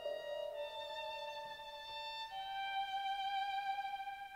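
Modern chamber-ensemble music scored for piano, synthesizer, violin, oboe, bassoons, horns and double bass: a few long held high notes that step to a new pitch about half a second in and again a little past two seconds.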